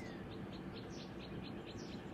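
Faint, rapid series of short, high chirps, about four to five a second, from a small bird.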